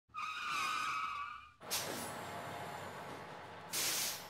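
Intro sound effect of vehicle tyres squealing for about a second and a half. The squeal is cut off by a sudden noisy burst that fades into a steady hiss, and a second short burst of hiss comes near the end.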